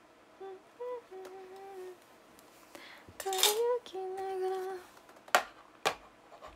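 A woman humming a slow tune quietly to herself: a few held notes, one gliding upward. Two sharp clicks come near the end.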